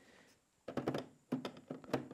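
Plastic knocks and clicks of a Festool 18 V battery pack being slid into the battery slot of a cordless dust extractor. A short series of them starts a little under a second in.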